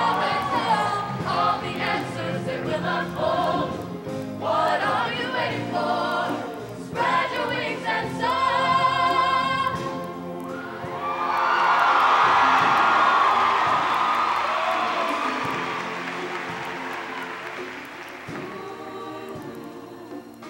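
Mixed show choir singing with instrumental accompaniment, closing on a held chord about halfway through. Audience applause then swells and slowly fades, and music starts again near the end.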